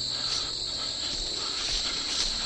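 A steady, high chorus of crickets chirring in the brush, with faint rustling of undergrowth beneath it.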